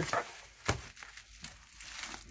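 Corrugated cardboard being creased and folded up by hand: one sharp crack about two-thirds of a second in, then faint handling noise.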